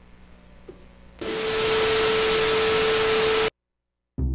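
Quiet room tone, then a little over a second in a loud burst of hiss like TV static with a steady tone held under it, lasting about two seconds and cutting off abruptly to silence: an edited-in static transition effect.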